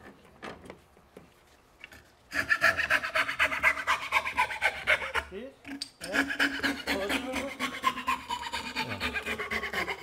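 Hand-held frame saw with a thin blade sawing a curved cut through a wooden board clamped in a vise: quick, rasping back-and-forth strokes. The sawing starts about two seconds in, breaks off briefly near the middle, then carries on.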